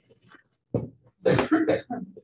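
A person coughing: a short cough about three-quarters of a second in, then a longer cough half a second later.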